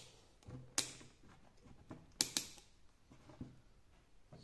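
A few sharp clicks of multimeter test leads being handled and clipped onto the terminals of an old ignition switch: one about a second in, then a quick pair a little after two seconds.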